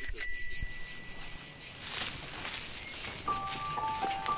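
Cicadas chirring in a steady, pulsing high-pitched buzz, opened by a brief bell-like ring. A few held musical notes come in near the end.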